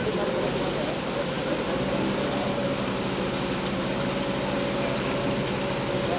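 Self-loading concrete mixer's engine running steadily, a constant drone, while the machine discharges concrete down its chute.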